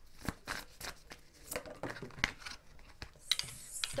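A deck of tarot cards being handled and cards drawn from it: a run of short, irregular flicks and snaps of card against card, with a card laid down on the table near the end.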